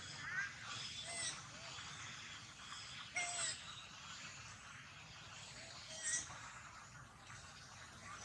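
Four short chirping animal calls, each a brief arched note, the third the longest, over a steady outdoor background hum.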